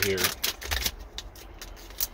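Small plastic wiring parts and a bag being handled in the fingers: light clicks and rattles, a quick run in the first second, then sparser.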